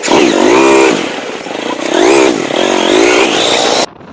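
Motorcycle engine revved up and down several times, very loud, starting and stopping abruptly.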